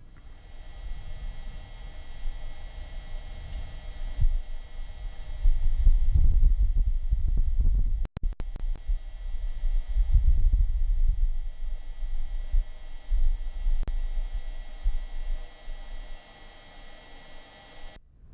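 Wind gust on the surface of Mars, about five metres per second, picked up by the Perseverance rover's entry, descent and landing (EDL) microphone: low buffeting noise that swells and is loudest around the middle. Under it runs the rover's own gentle whirr.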